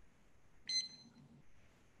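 Digital timer giving one short, high beep about two-thirds of a second in, as it is set going for a 20-minute countdown.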